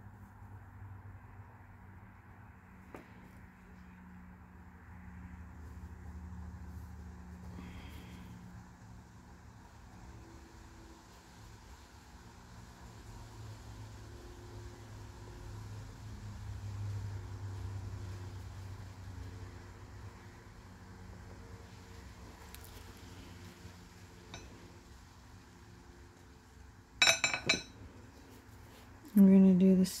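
Low steady hum with faint soft handling noise from close-up work at a table, and one brief bright clink a few seconds before the end.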